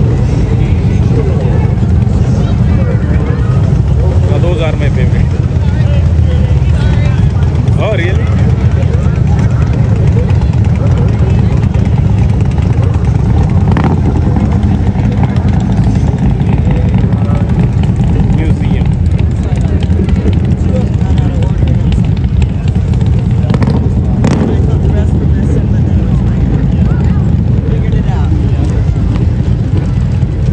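Group of large touring motorcycles and trikes rolling slowly past at parade pace, their engines making a continuous deep rumble.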